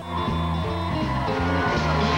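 Live band playing an upbeat rock instrumental on electric guitar, bass and drum kit, coming in right at the start after a brief gap.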